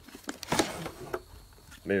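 A few short handling knocks and clicks, the loudest about half a second in, with a man's voice starting near the end.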